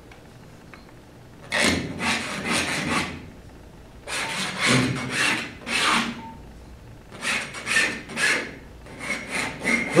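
Palette knife scraping oil paint across a stretched canvas: several runs of quick, short scraping strokes with pauses between.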